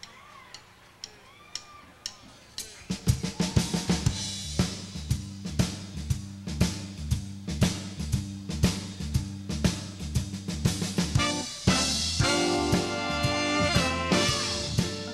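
Live band kicking off an up-tempo swing-blues number. After a few sparse drum taps, the drum kit and a bass line moving note by note come in at about three seconds with a steady driving beat. The horn section joins near the end.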